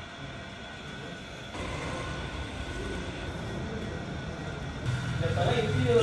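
Motor-driven wooden oil press (chekku) running steadily, its wooden pestle turning through crushed sesame in a stone mortar. Voices come in near the end.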